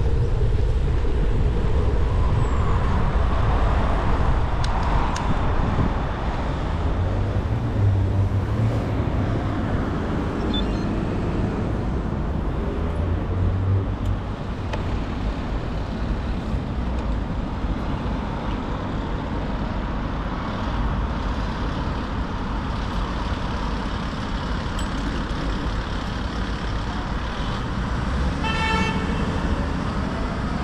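Road traffic heard from a bicycle in city streets: a steady rumble of passing and idling cars and vans, a little louder in the first few seconds while riding. A brief toot near the end.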